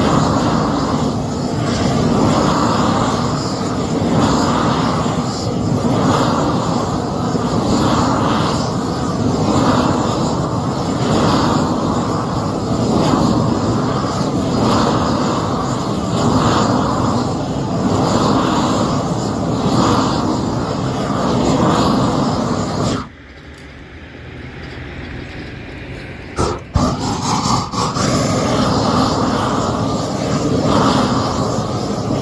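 Propane roofing torch burning at full flame as it melts the underside of a torch-on cap sheet, swelling and fading in a regular rhythm about every one and a half to two seconds. About three-quarters of the way through the flame noise drops away sharply for about three seconds, then a couple of sharp knocks and the torch comes back up.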